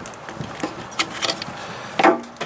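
Keys jangling and light metal clicks as a key is worked in the lock of an RV's outside storage-compartment door, ending in a louder knock as the latch or door is moved.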